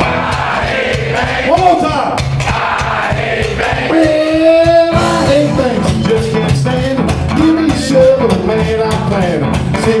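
Live rock-and-roll band music: electric guitar strummed along with washboard and cymbal percussion, with singing that holds one long note about four seconds in.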